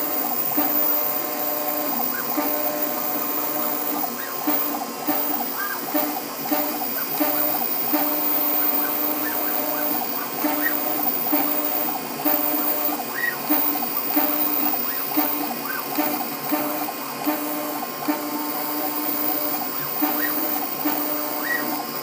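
A New Hermes Vanguard 4000 engraving machine running, its head dragging a spinning diamond bit through anodized aluminium to cut lettering. A steady mechanical whir with several humming tones that stop and restart every second or so as the head changes direction.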